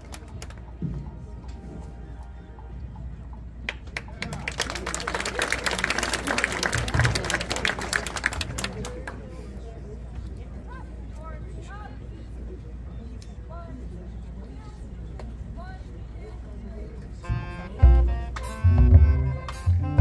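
Crowd in the stands cheering and clapping for a few seconds, then a quieter stretch of murmur. Near the end a high school marching band starts its show with loud, punchy low brass and drum hits.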